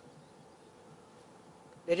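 Faint steady background hum during a pause in speech, with a man's voice starting again near the end.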